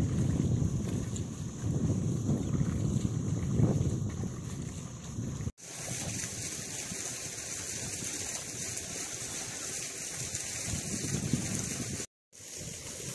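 Wind rumbling on the microphone over water sloshing in a flooded rice nursery bed as it is worked and a wooden levelling log is dragged through the mud and water. About halfway it drops out for a moment and turns quieter and steadier.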